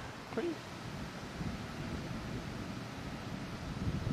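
Low, steady outdoor background on a golf course: light wind noise on the microphone, with no distinct strikes or calls.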